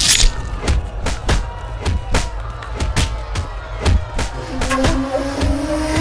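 Dramatic film score with a fast, driving percussion beat, about three hits a second, over deep bass. It opens on a loud hit, and a held low note comes in near the end.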